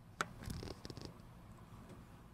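Handling noise: one sharp click, then a brief rush of rubbing and small knocks as the camera is moved.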